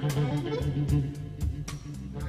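Electric blues band playing softly: electric guitar notes over bass guitar, with light, sharp drum hits.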